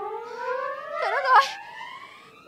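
A comic sound effect: one long whistle-like tone rising slowly and steadily in pitch, with a short wavering wail over it about a second in.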